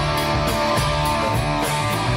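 Live rock band playing an instrumental passage: electric guitars and bass over a steady drum beat.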